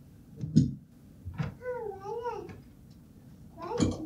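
A young child's wordless, sing-song vocalizing, one wavering call rising and falling in pitch, between two sharp knocks: the loudest about half a second in, another near the end.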